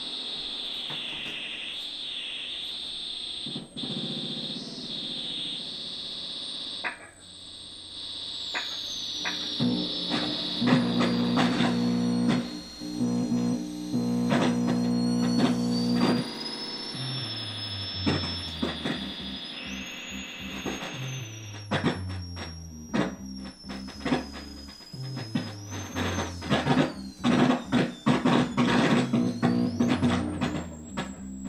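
Electronic noise music: a wavering high synthesizer drone at first, then sliding whistle-like tones over sharp percussive hits, with a low bass line stepping between notes in the second half.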